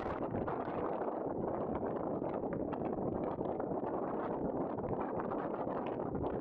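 Steady wind buffeting the microphone, with breaking surf beneath it.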